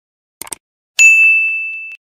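Subscribe-button animation sound effect: two quick mouse clicks, then about a second in a bright notification-bell ding that rings on and fades away.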